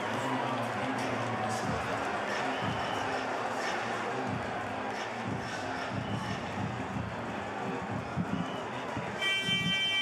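Live sound of a basketball game in play in a largely empty arena: voices on court and a ball bouncing on the hardwood. From about nine seconds in comes a steady buzzer-like tone.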